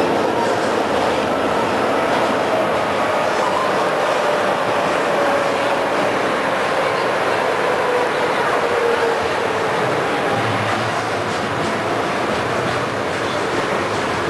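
Tram running, heard from inside the passenger car: a steady rumble of wheels on the rails, with a motor whine that falls slowly in pitch.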